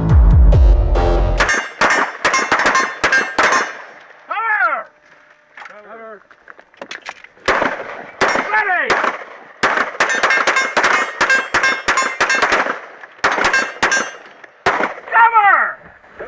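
Music ending, then a rapid, irregular series of loud sharp knocks and clanks, with several short cries that fall in pitch.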